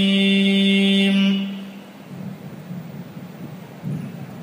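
An unaccompanied male voice chanting holds one long steady note that fades out about a second and a half in. It is followed by faint background noise.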